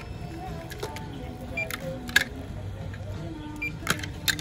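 Background music with sharp clicks and clacks of plastic hangers and clothing being handled on a checkout counter, and two short electronic beeps.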